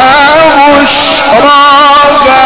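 A man reciting the Quran in the melodic mujawwad style: long held notes that bend into ornamented melismatic turns.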